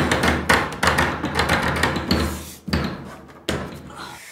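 A door being shoved and banged: a run of loud bangs and knocks at uneven intervals, each ringing on briefly in a hard-walled room, the last ones weaker near the end.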